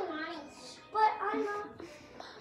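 A child singing: a held note trailing off just after the start, then another short sung phrase from about a second in.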